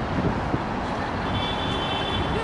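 Dense road traffic, a steady rumble of cars and buses. A thin, high-pitched whine joins in about halfway through and holds to the end.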